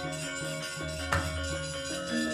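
Javanese gamelan playing: metallophones repeat a steady pattern of notes over low, sustained gong-like tones, with one sharp knock about a second in.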